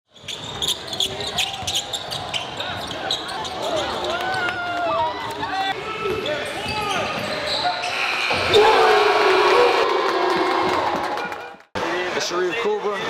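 Basketball dribbled and bouncing on a gym's hardwood court during a game, with many short sharp impacts, and players' voices and shouts over it. The sound cuts off abruptly near the end.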